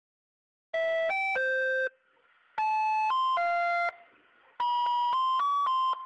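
A short electronic chime jingle: three quick phrases of three or four clear, steady notes each, separated by brief pauses.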